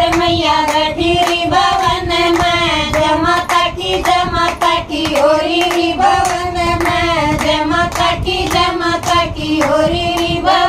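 A group of women singing a Haryanvi devotional bhajan to the Mother Goddess together, keeping time with steady rhythmic hand claps.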